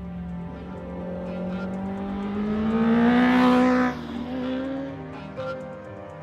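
Honda Fireblade's inline-four engine under throttle, rising in pitch and growing loud to a peak about three and a half seconds in, then dropping off suddenly.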